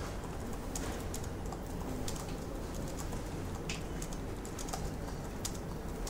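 Typing on a computer keyboard: scattered, irregular key clicks over a steady low background hum.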